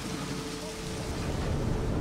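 Steady rain falling on a car's roof and windscreen, heard from inside the cabin, with a low rumble coming in about halfway through.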